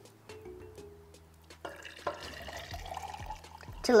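Vinegar poured from a glass beaker into a tall drinking glass, starting about a second and a half in. The pitch rises steadily as the glass fills. Background music plays throughout.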